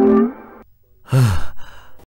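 A man lets out a short voiced sigh that falls in pitch, about a second in. It follows the tail of a sliding musical note at the very start.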